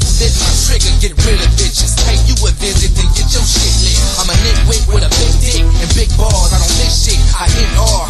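Hip hop track with rapping over a heavy, steady bass beat.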